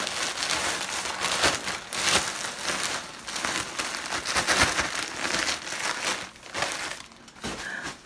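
Thin plastic packaging, a plastic mailer bag, crinkling and rustling as it is handled, in a near-continuous run of rustles that eases off near the end.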